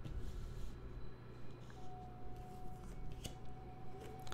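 Tarot cards being handled as the next card is drawn from the deck: faint rustling and sliding of card stock, with one sharp click about three seconds in.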